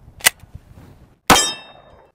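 A single shot from an FN 510 10mm pistol about a second and a half in, sharp and loud with a short metallic ringing after it. A light handling click comes just before, as the pistol is picked up.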